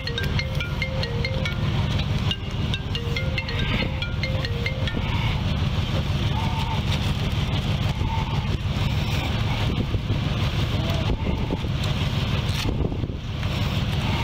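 Steady low rumble of an idling vehicle, with a quick run of short, high electronic chimes over the first five seconds.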